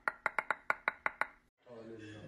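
A person laughing in a quick run of short pulses that slow down and fade out. About a second and a half in, the sound cuts off, and a steady low hum begins just before the end.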